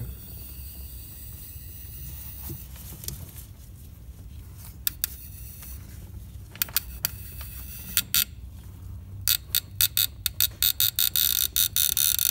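Socket ratchet on a long extension clicking as a glow plug is worked out of a Toyota 1KZ-TE diesel cylinder head: a few scattered clicks, then from about nine seconds in a fast, continuous run of clicks as the ratchet is swung back and forth.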